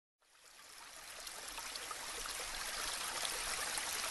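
Water running and trickling in an aquaponics system, an even splashing rush that fades in from silence over the first few seconds.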